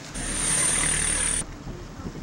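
Camcorder tape glitch at a cut between recorded shots: an abrupt burst of hiss with a steady high whine, lasting a bit over a second and cutting off suddenly, over a low background hum.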